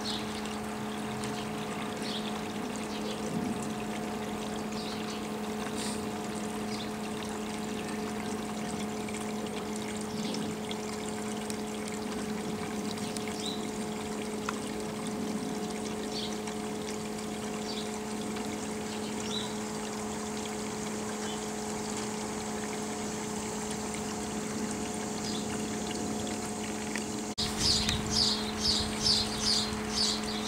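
A steady low hum with a faint watery trickle beneath it. Near the end, a quick run of high chirps.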